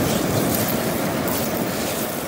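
Steady rush of rough surf, with wind buffeting the microphone.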